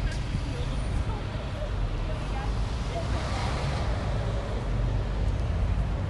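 City traffic noise with a steady low rumble; a passing vehicle swells up around the middle and fades away.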